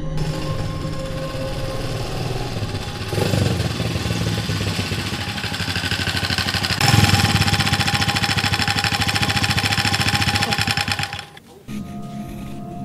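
Small motorcycle engine running with a rapid pulsing exhaust, getting louder in two steps, about three seconds in and again about seven seconds in, then cutting off sharply near the end.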